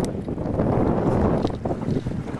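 Wind buffeting the microphone on an open boat at sea, a steady low rumbling noise, with a sharp click at the very start.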